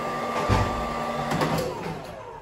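Wall-mounted hose hair dryer running with a steady motor whine that winds down in pitch near the end as it is switched off, with a low rumble of air starting about half a second in.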